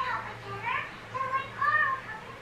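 A high-pitched voice in the background: several short calls that rise and fall, with pauses between them.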